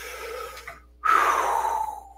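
A man breathes in audibly, then lets out a long sigh through the mouth, its pitch sliding down as it fades.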